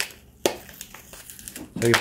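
Crinkling and crackling of a battery pack's green insulating wrapper as it is pulled back by hand from the cells, with a sharp crackle about half a second in.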